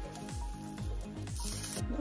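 Background music with a steady beat, with a brief high hiss about one and a half seconds in.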